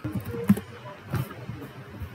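Computer keyboard keystrokes: a few separate key clicks, the loudest about half a second in, as a command is typed and entered.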